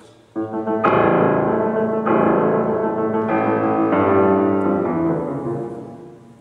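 Concert grand piano played loudly in full chords: it enters just after the start, with new chords struck about a second in and at about two and three seconds, each ringing on, and the sound fades near the end.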